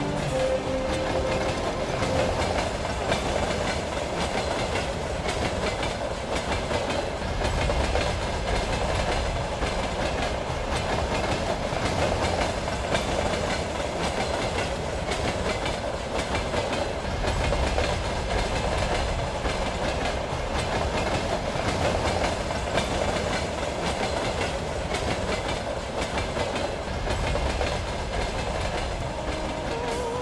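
Railway train running along the track: a steady rolling rumble with swells every few seconds.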